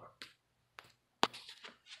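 Handling noises: a few light clicks and one sharp knock about a second in, with a little rustle after it.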